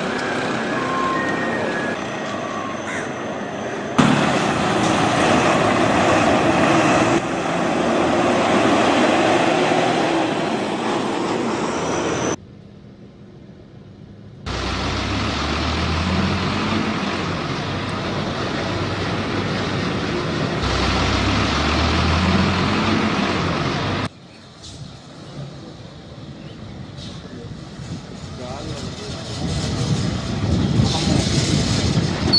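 Street sound at crowded bus stops: large diesel buses running, with a low engine hum standing out in the middle, among traffic noise and people's voices. The sound shifts abruptly several times, with a brief quieter stretch partway through.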